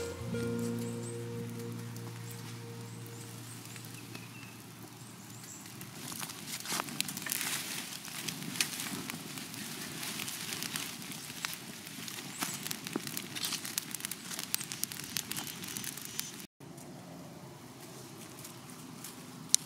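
A few held music notes fade out, then a wood fire crackles and leafy sweet-potato vines rustle and snap as they are laid over the fire pit.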